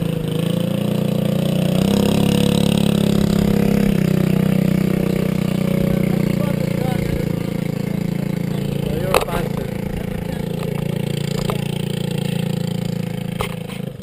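Rotax DD2 kart's 125cc two-stroke engine idling steadily at a low, even pitch. It stops abruptly near the end.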